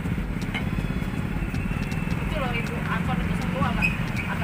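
Wooden pestle scraping and knocking as it grinds peanut ketoprak sauce in a plate, under a steady low rumble like engines and voices talking from about halfway in.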